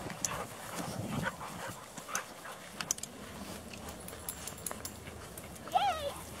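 Dog giving a short, high-pitched yip or whine near the end, over a quiet background of faint scattered rustles and clicks.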